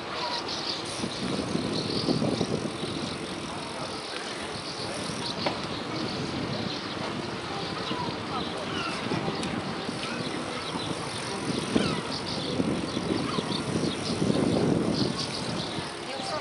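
Bicycle riding over paving, heard from the bike itself: a steady noisy rush with small irregular rattles and clicks, and people's voices at times.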